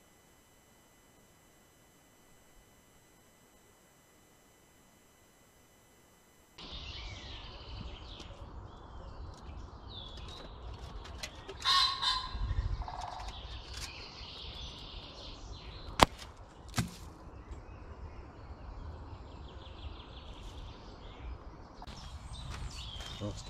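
Near silence with a faint electronic hum for the first third, then woodland ambience with birds chirping. About halfway through comes a loud, harsh bird call, and a little later two sharp knocks about a second apart.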